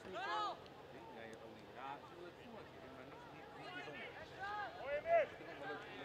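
Players and coaches shouting short calls across an open football pitch: one shout just after the start, then a run of calls near the end, the loudest about five seconds in.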